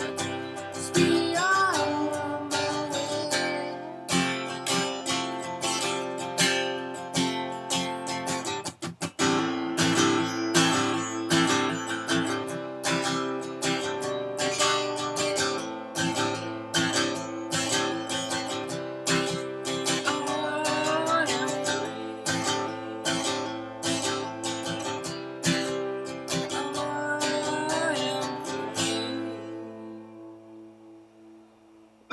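Acoustic guitar strummed in a steady rhythm, accompanying a man singing at times. Near the end the strumming stops and a last chord rings out and fades as the song finishes.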